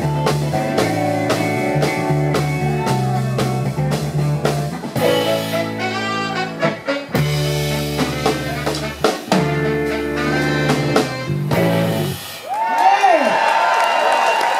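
A live soul band playing, with a steady drum beat, bass and keyboard under a woman's singing. The song ends about twelve seconds in, and the audience breaks into cheering and whooping.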